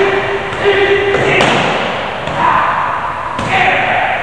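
Punches striking handheld focus mitts: a few sudden thuds in the ring, with pitched voice sounds between them.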